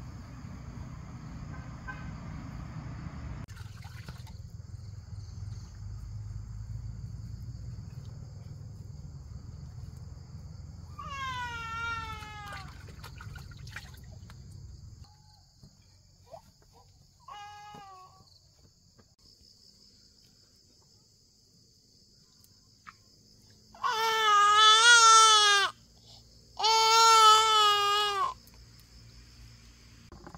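A baby crying: a falling wail partway through, a brief cry a few seconds later, then two long, loud wavering wails near the end. Insects chirr steadily underneath.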